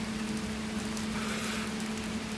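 Steady background hiss with a constant low hum.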